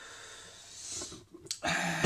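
A man drawing an audible breath through his mouth in a pause between sentences, then starting to speak again near the end.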